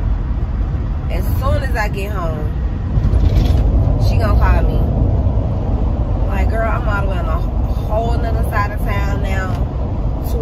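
Steady low rumble of road noise inside a moving car's cabin, with a woman's voice in drawn-out, wavering phrases, singing along rather than talking, from about a second and a half in.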